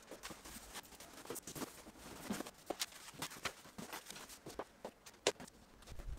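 Irregular handling noises of plastic bags rustling and plastic tubs knocking as studio supplies are moved about, with a few footsteps on a wooden floor. The sharpest knock comes about five seconds in.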